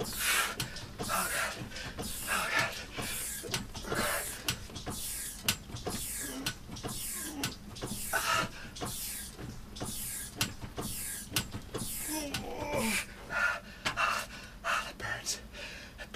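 A man panting hard in quick, rhythmic breaths, about two a second, while driving an upright rowing machine with hydraulic shock resistance through an all-out Tabata interval, with the machine clicking between breaths. Near the end comes a strained groan that falls in pitch, followed by gasping.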